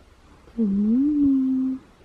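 A person's voice drawing out a single long, sing-song word, "Goood", dipping in pitch and then rising and holding, to wake sleeping children.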